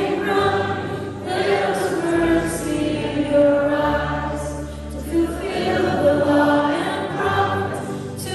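Live worship band playing a song: singing over acoustic guitars, violin, drums and bass guitar, with long held bass notes underneath.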